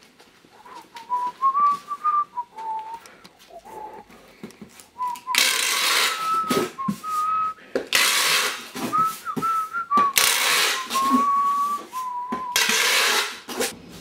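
A person whistling a tune: one clear note stepping up and down. About five seconds in, four loud bursts of hissing noise start cutting across it.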